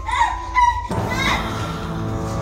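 A child's high, wavering giggle. About a second in, it cuts off and dense sustained music with many held notes comes in abruptly.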